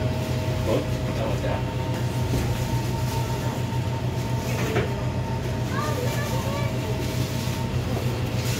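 Steady low machine hum inside a busy shop, with a few faint steady whining tones above it and the faint chatter of shoppers over it.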